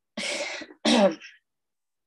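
A person clearing their throat in two short rasps, the second louder.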